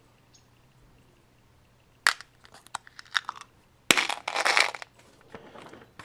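Handling noise from a green plastic bullet box and bullets. About two seconds in there is a sharp click and a few lighter clicks, then near four seconds a louder snap followed by about a second of crinkly rustling.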